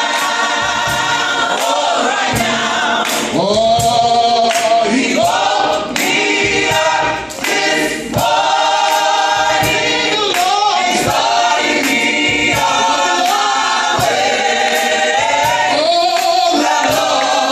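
A group of men's and women's voices singing a gospel praise song together, led by one man singing on a handheld microphone, with a faint steady beat about every three-quarters of a second underneath.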